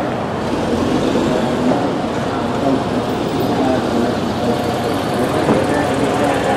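Steady city street traffic noise, with a double-decker bus driving past near the end.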